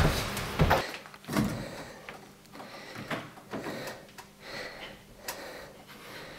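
Knocks and thumps from a person climbing on a plywood and steel-tube obstacle rig. A few loud ones come in the first second and a half, then lighter, scattered knocks follow.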